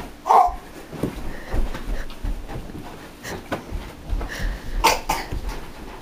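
A sharp knock as the bat strikes the stuffed lion doll, followed moments later by a short voice sound. Then scattered knocks and low thumps of footsteps and movement across the floor.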